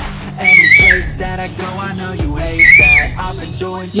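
Background music: a high, gliding melody phrase that comes back about every two seconds over a steady bass line.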